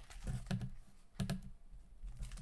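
Pages of a thick hardcover book being turned by hand: a few quick paper flicks and rustles.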